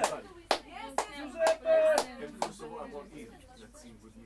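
About five sharp, irregularly spaced claps in the first two and a half seconds, among voices, with a brief held tone in the middle.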